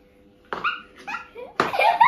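Young children laughing in short, high-pitched bursts, starting about half a second in and getting louder near the end.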